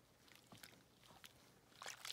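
Near silence, with a few faint, soft splashes and squelches from gloved hands pressing wet raw fleece down into a plastic tub of hot soapy water.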